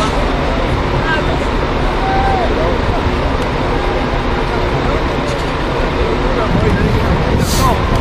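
Outdoor ambience at a rugby pitch: a steady low rumble with distant, indistinct voices calling, and a brief rustle near the end.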